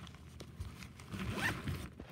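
A zipper being pulled shut, the loudest pull about a second and a half in.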